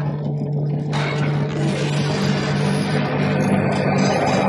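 Cinematic logo-intro sound design: a steady low drone with a hissing swell that opens up and brightens about a second in.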